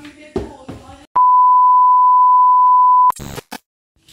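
A loud, steady electronic beep, one unchanging tone lasting about two seconds and starting about a second in, of the kind an editor lays over speech to bleep it out. It cuts off abruptly and is followed by a few short clicks.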